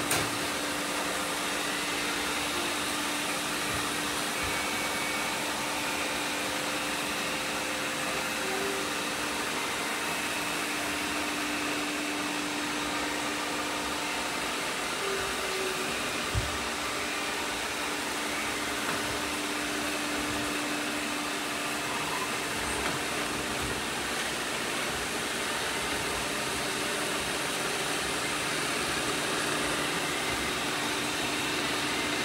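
Several robot vacuum cleaners running at once on a hardwood floor: a steady whirring hum of their motors and brushes with one constant tone through it. One brief knock about halfway through.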